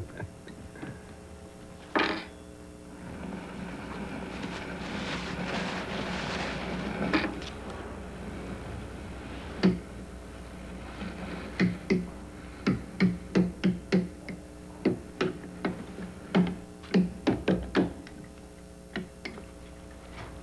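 Eating at a table with forks and ceramic bowls: a knock about two seconds in, a few seconds of hissy noise, then a run of quick, irregular clicks and taps of forks against the bowls, over a steady electrical hum.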